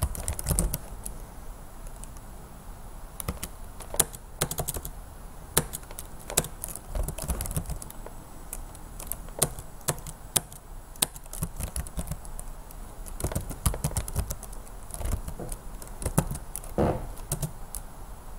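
Typing on a computer keyboard: irregular, unevenly spaced key clicks as a short command is typed and entered.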